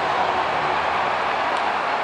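Ballpark crowd cheering a home run, a steady wash of noise with no single voice standing out.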